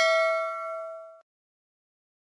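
Bell-like 'ding' notification sound effect ringing out with one clear tone and its overtones, fading, then cutting off abruptly a little over a second in.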